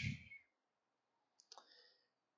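A man's word trailing off, then near silence in a pause between sentences, broken by one brief, faint click about a second and a half in.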